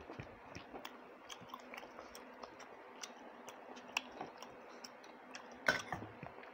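Close-up wet chewing: a person eating a mouthful of rice and meat curry, with many small clicks and smacks of the mouth. A louder burst of clicks comes just before the end.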